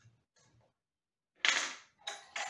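A single sharp metallic clank about one and a half seconds in, from the small pulley and its hook being handled on the rail of a metal clothes-drying rack, with faint handling clicks before it.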